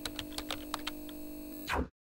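Keyboard-typing sound effect: a run of quick, irregular keystroke clicks over a steady electronic hum, swelling briefly near the end and then cutting off.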